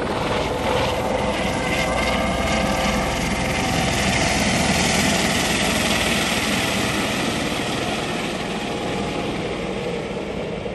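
Helicopter flying low past, its rotor and engine running steadily, loudest about halfway through and easing a little near the end.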